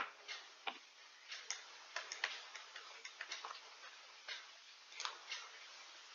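Faint, irregular light clicks and ticks, roughly two or three a second, over a low background hiss.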